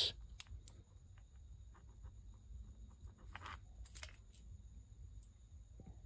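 Faint clicks and light scrapes of a small LRP ZR30 nitro engine being handled, its loose clutch and flywheel pressed down onto the collet and turned by hand, with a couple of brief rustles near the middle.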